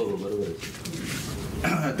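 A pause in a man's speech filled by low, hazy background noise of a small crowded room, with a man's speech resuming near the end.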